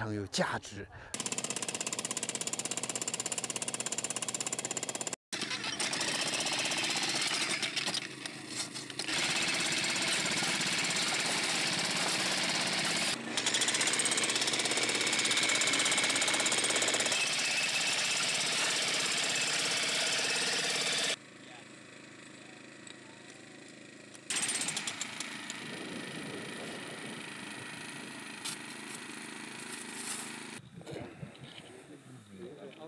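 A handheld electric power hammer chiselling into rock: a loud, continuous hammering rattle, broken by a few sudden cuts. About two-thirds of the way through it stops, and a quieter stretch with light tapping follows.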